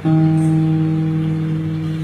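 Acoustic guitar struck once just after the start, its note or chord left to ring steadily for nearly two seconds.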